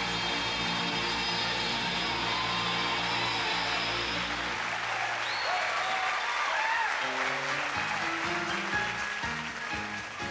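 A southern gospel quartet with piano and band ends a song on a long held chord; about five seconds in, the audience applauds and cheers, and then the piano and band start playing again near the end.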